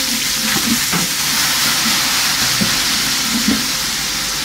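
Hot oil sizzling steadily in a cooking pot as fried onions and a green paste fry, stirred with a wooden spoon.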